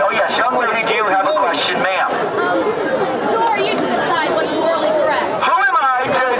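Speech and crowd chatter: a man talking through a portable loudspeaker amid a crowd of people talking.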